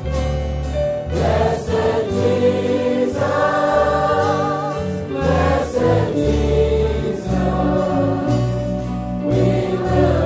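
A choir singing Christian music, voices with vibrato over low held notes that change about once a second.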